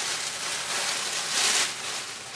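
Plastic rustling and crinkling, as of a plastic shopping bag being rummaged through, with a louder rustle about one and a half seconds in.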